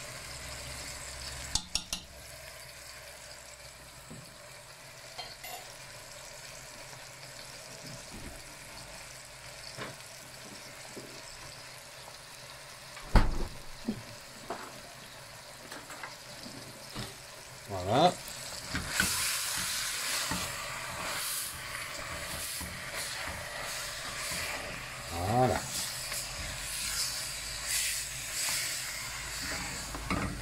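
Lamb pieces cooking in oil in a stainless steel pot, sizzling faintly. About two-thirds of the way through, a wooden spoon starts stirring the meat and spices, and the sizzling gets louder and more uneven. There is a single sharp knock about 13 seconds in.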